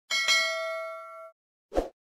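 Notification-bell sound effect: a bright ding made of several ringing tones, struck twice in quick succession and fading out over about a second. A short soft pop follows near the end.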